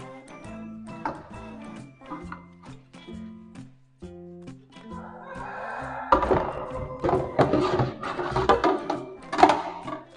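Background music with a steady beat. About six seconds in, louder clattering and splashing of plates being washed in a stainless-steel sink rises over the music.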